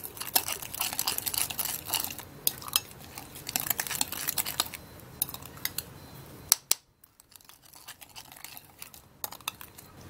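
Metal spoon stirring a gritty paste of ground almond, oats, sugar, yogurt and honey in a glass bowl, scraping and clinking against the glass. The clinks come thick and fast for about six seconds, then thin out to a few.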